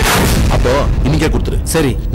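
A sudden booming transition sound effect at a scene change, fading over about half a second, followed by a man starting to speak.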